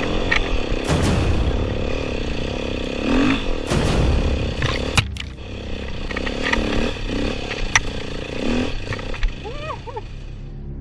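Dirt bike engine revving up and down repeatedly as it is ridden over rough forest ground, with several sharp knocks, mixed with background music.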